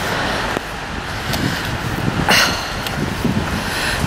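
Steady noise of road traffic on a town street, with an uneven low rumble on the microphone and a few short light knocks.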